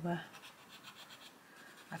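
Castle Arts Gold coloured pencil scratching on paper in quick, repeated short strokes, several a second, as it shades in colour. Faint.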